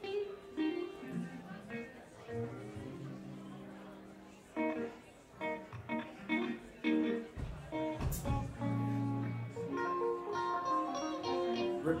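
Loose, unstructured noodling on electric guitar and bass: scattered single notes and short phrases with gaps between them rather than a song, a deep bass note held for about a second past the middle, and a single sharp knock about eight seconds in.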